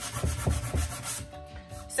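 Hand-sanding dry paint on a wooden shelf with a sanding block: quick back-and-forth rubbing strokes, a few a second. The sanding distresses the fresh paint and smooths it to a soft, polished finish.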